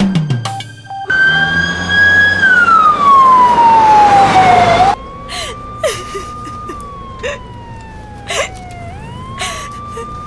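Ambulance siren wailing: loud for about four seconds, its pitch holding and then falling, then quieter and muffled as heard from inside the ambulance, slowly rising and falling. Short knocks and rattles sound at irregular moments over the quieter part.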